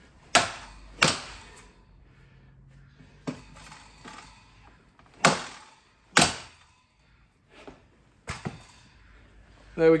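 A mallet striking a manual flooring nailer, driving nails through the edge of solid wood parquet boards to pull the joint tight and close a gap between them. About six sharp blows land at uneven intervals.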